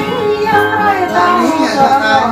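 A voice singing a melody over a strummed acoustic guitar, the guitar's chords sustaining steadily under the sung line.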